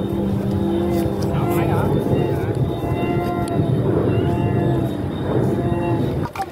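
Many Vietnamese kite flutes (sáo diều) on kites flying overhead, sounding together as a steady drone of several held tones over a dense background hiss.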